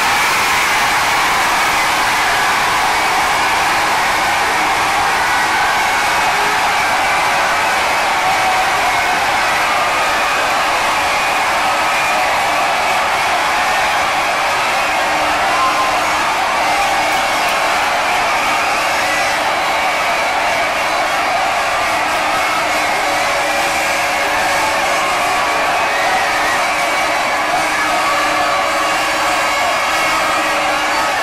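A huge crowd of football fans cheering and shouting in one continuous loud roar, celebrating with flags waving.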